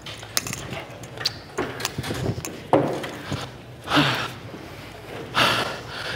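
Scattered knocks and footsteps of people moving about on a stage, with a few short rushes of noise.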